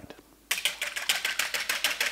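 A wire balloon whisk beating heavy whipping cream by hand in a ceramic bowl: rapid, even clicks of the wires against the bowl, about eight to ten strokes a second, starting about half a second in. The cream is being whipped toward stiff peaks.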